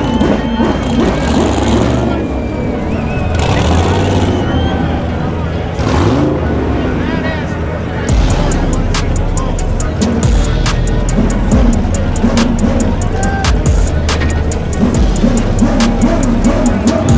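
Loud outdoor event mix: indistinct voices and car engines running, with music carrying a heavy bass beat coming in about halfway through.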